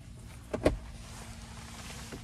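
The center console armrest lid of a Rivian R1T being handled, giving a single short knock a little over half a second in, over a faint steady hiss in the cabin.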